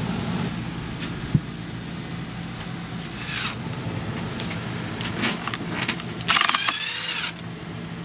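Cordless drill-driver backing screws out of a mold, its motor whirring briefly about three seconds in and again, louder, for about a second near the end, over a steady low hum.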